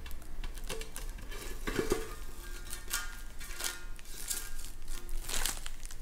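Protective plastic film being peeled off the edge of a corrugated metal garden-bed panel: irregular crinkling and crackling of the film, with the thin metal sheet rattling now and then as it is handled.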